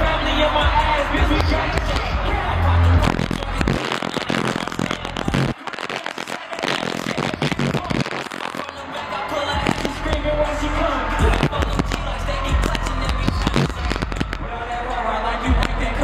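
Live hip-hop concert music through an arena PA, with a rapper's vocal over the beat. The bass drops out about four seconds in, leaving a stretch of sharp crackling hits, and comes back a few seconds later.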